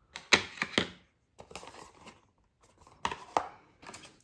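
Cardboard and paper-pulp packaging handled and set down on a wooden desk: a few short taps and scrapes in the first second, faint rustling, then another cluster of taps about three seconds in.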